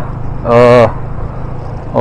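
Yamaha FZ25's single-cylinder engine running steadily at highway cruising speed, with a low rumble of engine and road noise on the bike-mounted microphone. A brief vocal sound from the rider comes about half a second in.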